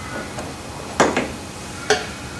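Two sharp metal clicks, one about a second in with a short ring and one near the end, as the Allen key and steel handwheel are worked off the shaper's feed shaft.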